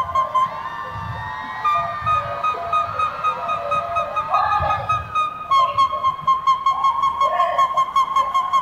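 A male singer's voice holding a very high, whistle-like note, which breaks into quick, evenly repeated staccato pulses on the same pitch from about two-thirds of the way through.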